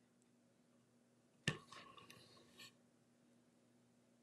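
Near silence, broken about one and a half seconds in by a sharp click on the worktable and about a second of light scraping and tapping, as small craft tools are handled and set down.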